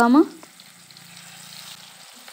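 Masala-coated fish pieces frying in hot oil in a steel kadai, with a faint, even sizzle.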